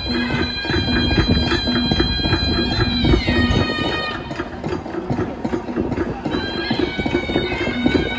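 Khasi traditional festival music: a tangmuri, a reedy double-reed pipe, plays held, wavering notes over a steady drum beat. The pipe drops out briefly midway while the drums carry on, then comes back in.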